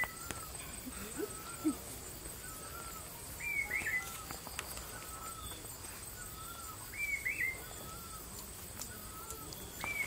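A bird singing: a short, high call repeated about every three and a half seconds, with softer, lower notes in between.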